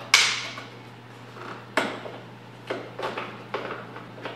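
Plastic pry tool prying a rocker-panel trim cover off its hidden springy toothed clips: a sharp snap about a quarter second in, then four smaller clicks and taps as the panel is worked, over a steady low hum.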